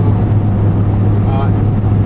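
Steady low drone of a car's engine and road noise, heard from inside the cabin while driving.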